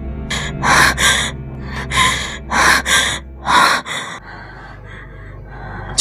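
A woman gasping for breath in distress: a run of sharp, ragged breaths in quick succession over a low music drone. Both stop about four seconds in.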